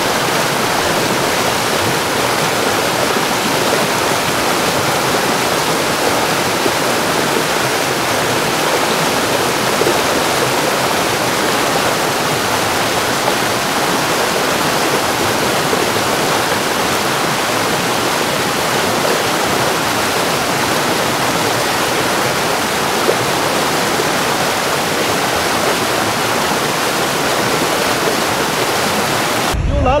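Steady, loud rushing noise of a debris flow: muddy water and rock pouring down a mountain channel, unbroken until it gives way to shouting just before the end.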